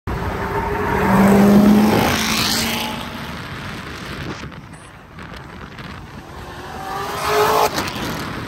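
Black C7 Corvette's V8 accelerating hard past, loudest about one and a half seconds in, then fading as it pulls away down the road. Another engine revs up near the end.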